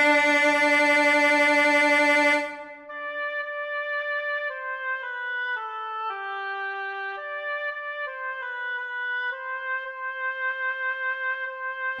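Synthesized MuseScore playback of a choral hymn score: the bass part's held note sounds loudly and ends about two and a half seconds in, then a quieter single melody line moves note by note in a higher register.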